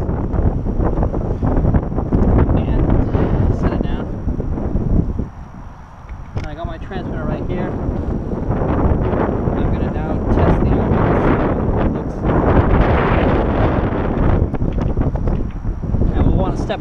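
Loud wind buffeting the microphone, with a brief lull about five seconds in.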